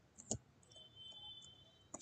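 A few faint computer keyboard keystrokes: one clear click about a third of a second in and another near the end. A faint high steady tone sounds briefly in the middle.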